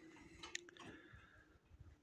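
Near silence: faint room tone with a single small click about half a second in.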